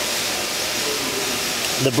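Steady, even hiss, spread from low to very high pitches, with no rhythm or tone in it.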